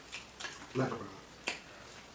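Eating with the hands: a brief voiced murmur just under a second in and one sharp click about halfway through, with a few fainter clicks, the mouth and finger sounds of people eating stew and yam.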